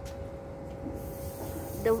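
Low rumbling background noise with a steady faint hum, and a soft hiss in the second half.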